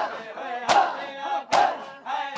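Crowd of mourners beating their bare chests in unison (matam): three loud slaps, a little under a second apart, with men's voices chanting a noha between the strikes.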